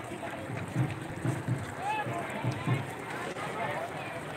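Indistinct voices of people talking over a steady background hiss, with no words clear enough to make out.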